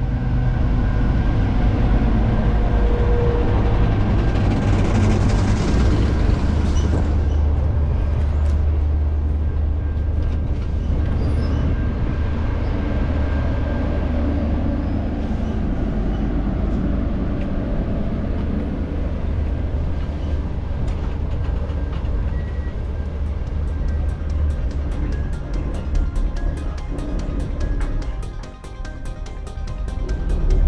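Deep, steady rumble of a diesel-electric train, the Great Southern's NR-class locomotive, with music laid over it. A regular ticking beat comes into the music near the end.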